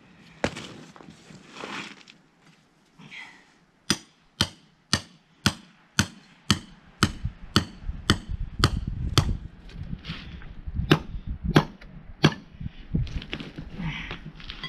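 Hammer striking a chisel into a sandstone block. A run of sharp strikes, about two a second, starts about four seconds in and slows toward the end.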